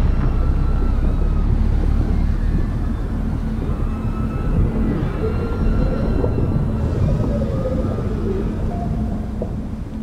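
Atmospheric score: a deep, continuous rumble with long held tones and slow gliding notes drifting above it.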